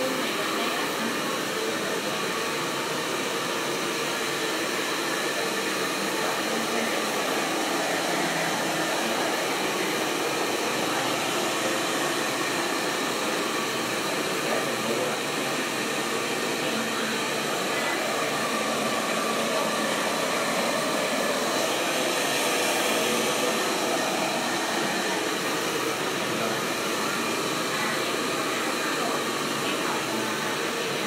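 Handheld hair dryer running steadily: a constant rush of air with a faint steady whine, unchanged throughout.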